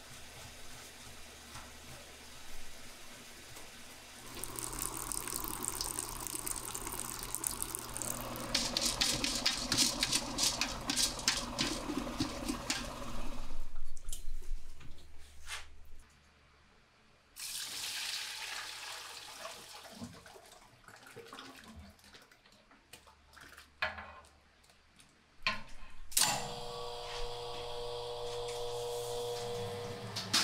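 Liquid pouring and splashing from a pot into a cloth-lined metal drum, then a centrifugal spin-dryer motor starting near the end and running with a steady hum as the drum spins.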